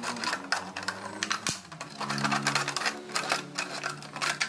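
A knife blade sawing through the thin wall of a clear plastic jar: the plastic crackles and clicks quickly and irregularly as the blade cuts.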